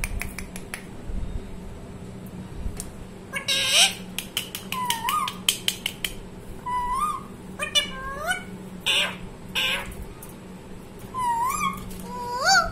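Rose-ringed parakeet calling: short rising whistled notes, repeated several times from about five seconds in, mixed with a few harsh, noisy squawks.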